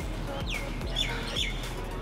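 Birds chirping: a falling whistle about half a second in, then a few short chirps around the one-second mark, over quiet background music.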